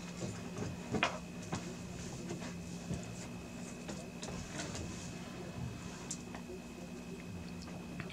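Faint rustling and a few light clicks of bundled PSU power cables being handled and routed by hand, over a steady low hum.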